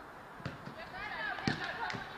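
A football kicked three times on the pitch, sharp thuds about half a second, a second and a half and two seconds in. Players shout and call to each other between the kicks.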